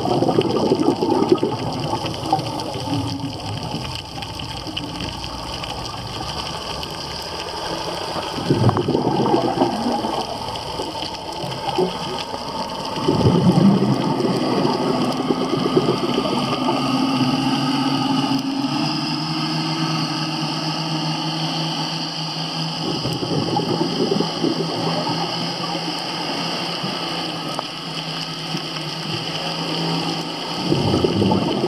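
Underwater sound of a scuba diver's regulator: bursts of exhaled bubbles come every several seconds over a constant water hiss. A steady low hum runs through the second half.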